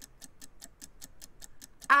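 Rapid, even ticking of a clock-style countdown sound effect.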